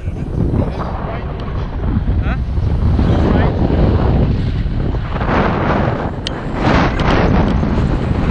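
Wind rushing over the microphone in flight, a loud buffeting noise that comes and goes in gusts and grows stronger in the second half.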